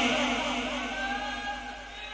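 A man's sung phrase, amplified through a microphone and loudspeakers, trailing off and fading away over about two seconds.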